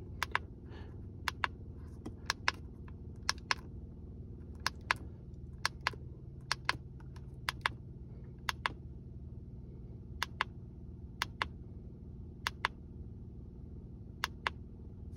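Button clicks on a handheld MaxiScan MS300 OBD-II code reader as its menu is paged through to read the stored fault codes: sharp plastic clicks, mostly in quick pairs about once a second, over a low steady hum.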